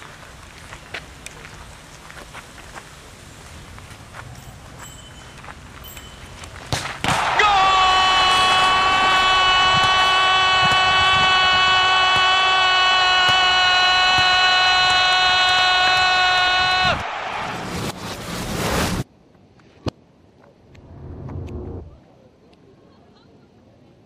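Low background noise with scattered clicks, then, about seven seconds in, a loud steady horn-like tone on one pitch, held for about ten seconds before it cuts off. A couple of seconds of noise follow it.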